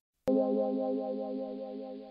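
A short music sting between sections of narration: a held, chorus-effected electronic chord that begins abruptly a moment in and slowly fades.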